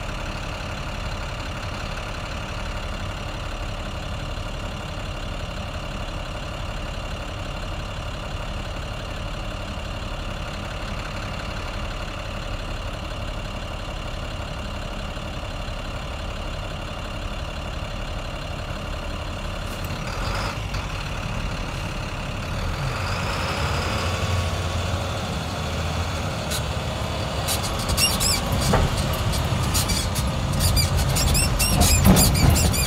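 Vehicle engine idling with a steady hum, then growing louder from about twenty seconds in as the vehicle pulls away, with a few sharp clicks near the end.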